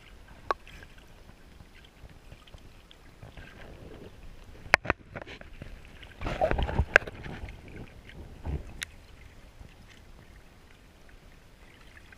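Water and gravel heard from underwater on a stony riverbed: irregular sharp clicks over a low rumble, with a louder stretch of churning water about six to seven seconds in and a smaller one a little later.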